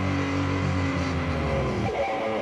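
Death metal band playing: distorted electric guitars and bass hold a low chord with a steady drone, then break into a new riff near the end.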